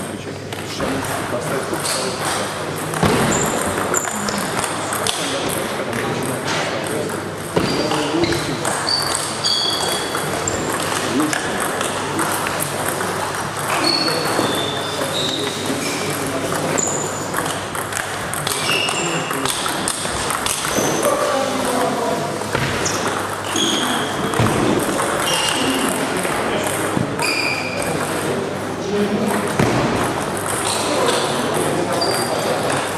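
Table tennis balls clicking off bats and tables in irregular rallies, with hits from several tables at once, over the steady chatter of voices in a large hall.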